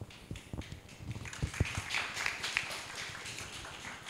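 Footsteps and a few soft thumps on a stage as two people sit down in wooden director's chairs, with some scattered rustling and tapping.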